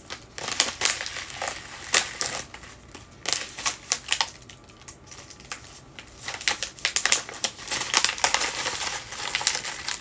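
Clear plastic zip bag of freeze-dried candy crinkling and crackling as it is handled and opened. The crackling is dense at first, eases off for a few seconds in the middle, then picks up again near the end as a hand goes into the bag.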